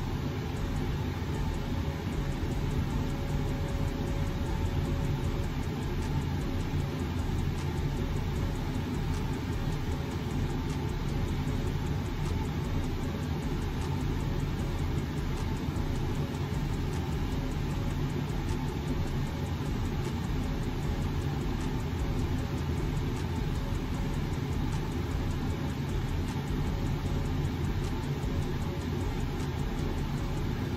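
Steady low background noise with a faint steady hum, level and unchanging throughout, with no distinct sounds standing out.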